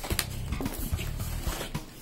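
Cardboard packaging being opened and the boxers slid out: a few short clicks and scrapes of card and fabric. Background guitar music plays underneath.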